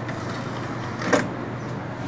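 Computer DVD drive tray closing with a disc in it, a short clunk about a second in, over a steady background hiss.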